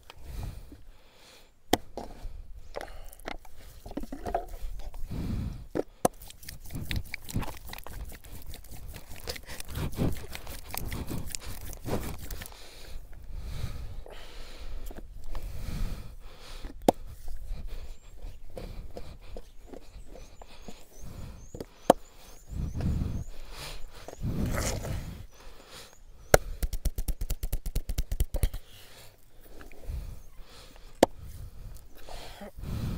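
Hands rubbing and pressing oiled bare skin on a man's chest and shoulders: wet sliding, scraping sounds with scattered sharp clicks. Twice a quick run of rapid clicks, once for several seconds early and again near the end.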